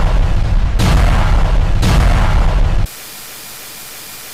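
A cartoon explosion sound effect, looped so that the same blast starts over twice, about a second apart. A little under three seconds in it cuts off abruptly into the steady, quieter hiss of TV static.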